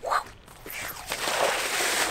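A person sliding on his body down the wet concrete wall of a skatepark bowl into the rainwater pooled at the bottom: a rushing hiss that builds from about half a second in and ends in a splash.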